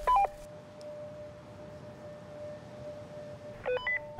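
Two-way radio beeps: a short chirp of stepping tones as one transmission ends, and another just before the next one starts near the end. A faint steady tone hums in between.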